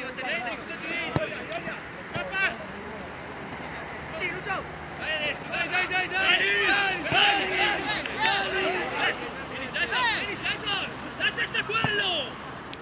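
Men's voices shouting and calling across an outdoor football pitch during play, many short calls overlapping. There are a couple of sharp knocks, one about a second in and one near the end.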